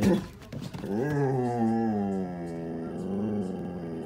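A Doberman–Border Collie mix gives a short sharp bark at the start, then one long, low, drawn-out moaning call lasting about three seconds and slowly falling in pitch. It is his alarm at the mail carrier outside.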